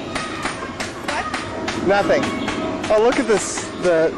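Unworded voices whose pitch swoops up and down, loudest about two and three seconds in, over faint background music with a steady held tone.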